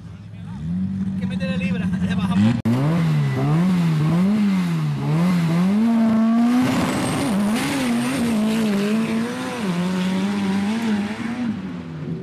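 Sand drag car engine revved on the line in repeated rising and falling blips, then launching at full throttle about six and a half seconds in, with a burst of noise as the tires dig into the sand.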